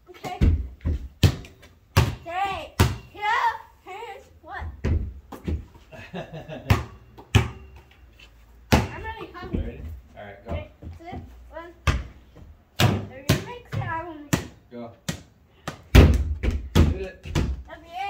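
A basketball bouncing on a concrete patio: many sharp bounces at an uneven pace, with voices in between.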